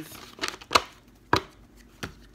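A few sharp, separate taps or knocks at irregular spacing: a small one a little under half a second in, then two louder ones about three-quarters of a second and one and a third seconds in.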